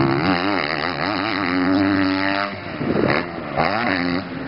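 Motocross bike engine revving as the rider works the throttle over the jumps, its pitch wavering up and down, dropping about two and a half seconds in, then picking up again in a short burst near the end.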